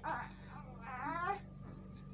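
Baby whimpering: a short sound at the start, then a brief wavering cry about a second in.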